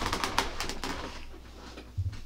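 Rustling and creaking of a person shifting in a desk chair: a cluster of quick scratchy sounds in the first second that fades away, with a low thump near the end.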